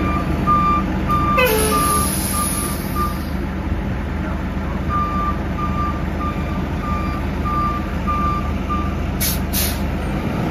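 A 2004 Orion V diesel bus idles at a stop while a warning beeper sounds about twice a second. The beeping stops for a couple of seconds in the middle, then starts again. About a second and a half in, air is let out in a two-second hiss with a falling tone, and near the end there are two short hisses of air.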